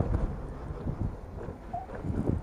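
Low, irregular wind buffeting on the microphone with road rumble from an electric scooter riding uphill under acceleration.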